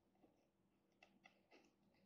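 Near silence, with a few faint, short squeaks and scratches of a pen writing on paper, most of them about a second in.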